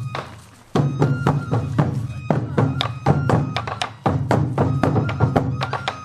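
Sansa odori taiko drums, worn at the hip and struck with wooden sticks, beating a fast festival rhythm. They drop out briefly just after the start and come back in under a second in.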